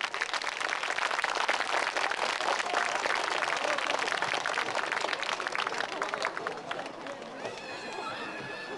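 Audience applauding, the clapping dying away about seven seconds in.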